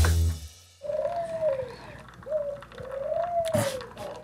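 Birds cooing softly: three drawn-out coos that rise and fall, the middle one short.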